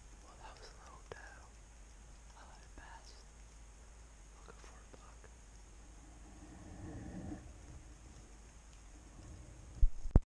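A person whispering in several short, faint phrases, with two sharp knocks at the very end.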